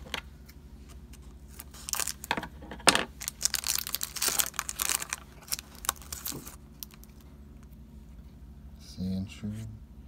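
Foil booster-pack wrapper being torn open and crinkled by hand: a run of crackling and rustling from about two seconds in, with one sharp crack near three seconds, dying away after about six and a half seconds.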